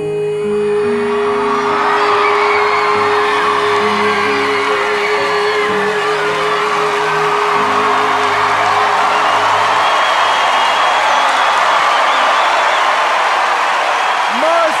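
A singer holds one long final note over backing music while the audience cheers and whoops. The note wavers near its end and fades about halfway through, and the music and cheering carry on.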